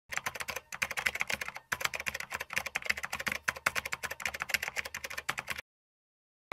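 Rapid computer-keyboard typing: fast, even key clicks at about ten a second, with two brief pauses in the first two seconds, stopping abruptly about half a second before the end.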